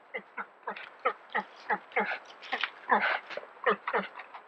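An animal calling in a rapid series of short yelping calls, about three a second, each sliding down in pitch.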